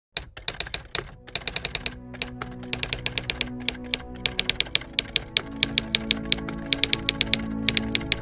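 Typewriter typebars striking in quick, irregular runs of sharp clacks, over background music that slowly grows louder.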